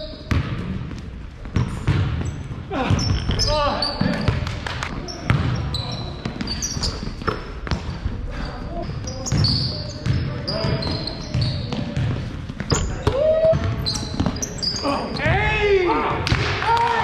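Basketball bouncing on a hardwood gym floor, with repeated sharp thuds and short high squeaks of sneakers, mixed with players' voices, all echoing in a large gym.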